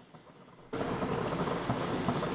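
Faint quiet, then, under a second in, a sudden steady wet crackling and squelching of a hand mixing raw chicken pieces with seasoning on a plate.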